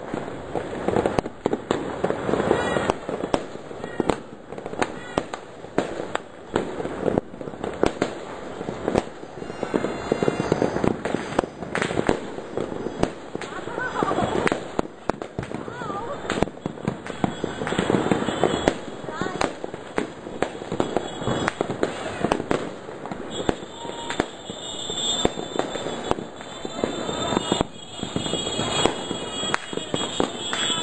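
Many fireworks and firecrackers going off at once: a dense, unbroken run of overlapping bangs and crackles.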